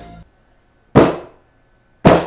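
One sharp knock, dying away quickly: a rock-hard Xinjiang dalieba loaf struck down onto a macadamia nut on a wooden chopping board, about a second in.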